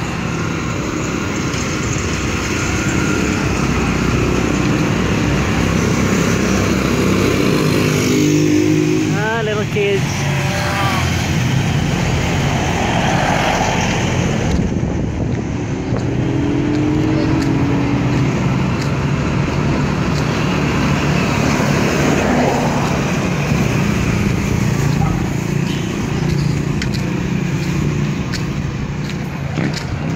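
Street traffic: motorcycle and tricycle engines running and passing on the road, with the engine note rising as vehicles speed up a couple of times.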